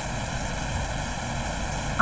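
Steady background noise: an even hiss with a faint hum, unchanging throughout.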